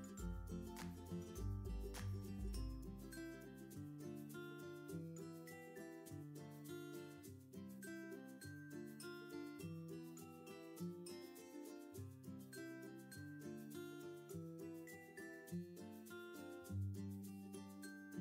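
Quiet instrumental background music with a bass line under changing melodic notes.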